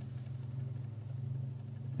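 A steady low hum, with no other sound, in a pause in speech.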